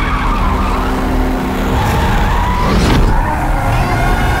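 Cars skidding on wet pavement, with a loud, steady low engine rumble and tyres hissing through water.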